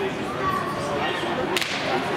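Ice hockey faceoff: one sharp, whip-like crack from the play on the ice about one and a half seconds in, over the steady murmur of the rink and spectators' voices.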